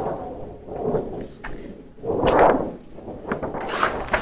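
A large mylar (polyester film) sheet flexing and swishing as it is carried and laid onto a mounting table, with a louder whooshing wobble about two seconds in.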